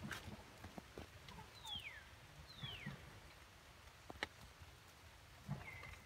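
Quiet forest ambience: two falling whistled calls under a second apart, about a second and a half in, and a shorter call near the end. Scattered light clicks and rustles, like leaf litter and twigs, run through it.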